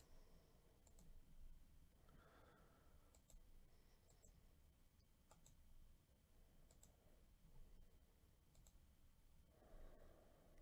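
Near silence, broken by a few faint, scattered clicks of a computer mouse.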